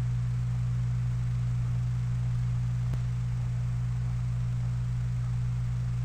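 Steady low electrical hum with no change, a faint click about three seconds in.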